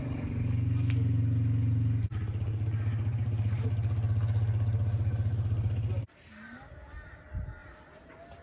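Steady low drone of a vehicle engine and road noise while driving, which cuts off suddenly about six seconds in, leaving a much quieter outdoor background.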